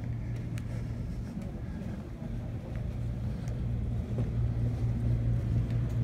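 Steady low background hum inside a retail store, with a few faint clicks.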